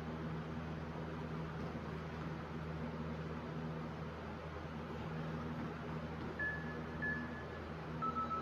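Steady hum and hiss of a running electric fan, with two faint short high beeps near the end.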